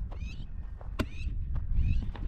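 Wild birds calling in short, curving chirps, once near the start and again near the end, over a steady low rumble of wind on the microphone. A single sharp click sounds about a second in.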